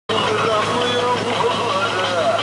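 Background voices over the steady low hum of a tour boat's engine.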